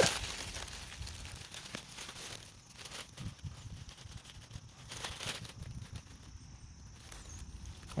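Fingers digging and scratching in loose soil among dry leaf litter to unearth a spring beauty corm, with scattered soft crackles and rustles.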